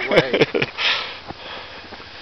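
A man laughing in short bursts that trail off into a noisy breath about a second in.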